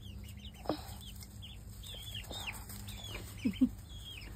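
Chickens peeping with short high chirps while foraging, with two quick low clucks about three and a half seconds in.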